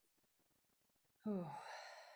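A woman's sigh a little over a second in: a short voiced "ahh" falling in pitch that trails off into a long breathy exhale.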